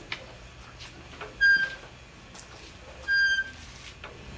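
The loading handwheel and screw of a beam-bending test machine squeak twice as the wheel is turned, each squeak short and even in pitch, about a second and a half apart. Faint clicks of the mechanism can be heard between them.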